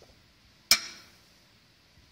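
A Pyrex glass container clinking once, sharply, as it is lifted off the plates of a microwave plasma chamber, with a brief ringing after the hit.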